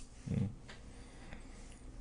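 A man's short low hum ("mm") about a quarter second in, then quiet room tone with a couple of faint ticks.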